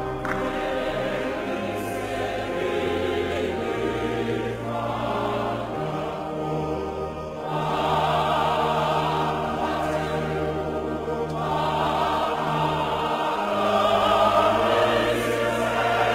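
Choir singing, with held chords over a bass line that steps from note to note, growing louder about eight seconds in and again near the end.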